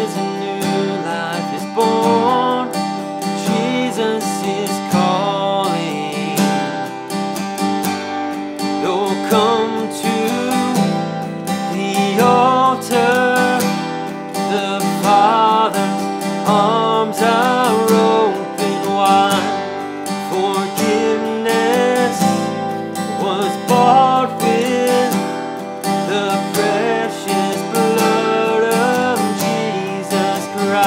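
A man singing while strumming an acoustic guitar with a pick in a down-down-up-down-up pattern, moving through G, C, Em and Am chords.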